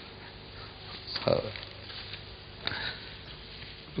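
A pause in a man's lecture: he says "So" about a second in, then only a faint steady hiss with one short, soft noise near three seconds.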